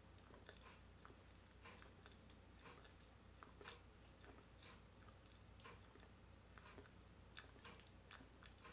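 Near silence with faint, irregular wet mouth clicks and smacks from a tongue being pushed out and drawn back again and again, over a steady low hum.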